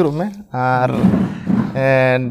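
A man's voice talking, with a drawn-out rough, breathy sound in the middle lasting about a second.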